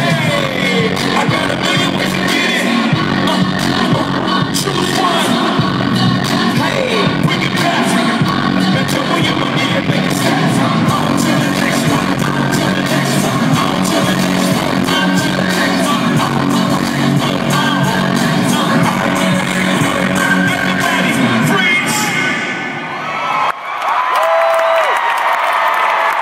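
Loud live concert music from an arena sound system, with vocals and the crowd mixed in. About 22 seconds in the bass cuts out and the music dips briefly, then carries on without the bass.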